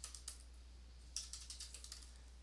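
Computer keyboard being typed on softly: a couple of keystrokes, then a quick run of them about a second in.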